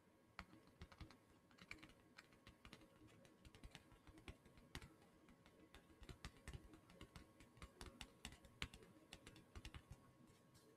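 Fingertips and nails tapping and scratching on a leather bifold wallet held close to the microphone: quiet, irregular taps, coming thicker in the second half.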